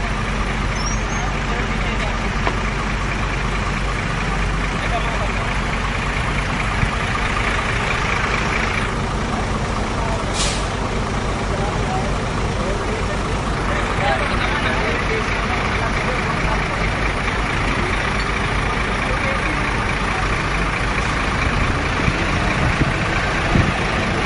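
Heavy diesel engine running steadily under a crane lift, with a few seconds of air hiss near the middle.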